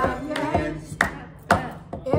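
Voices of a small dinner party singing trail off, then a few sharp hand claps, two of them about half a second apart.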